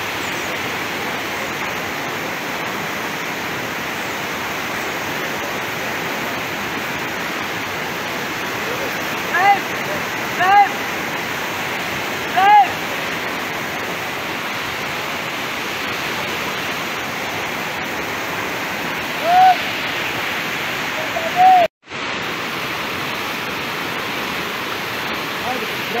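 Muddy floodwater of a swollen river rushing steadily. A few short shouts from people ring out over it about nine to thirteen seconds in and twice more around twenty seconds. The sound drops out for a moment just before twenty-two seconds.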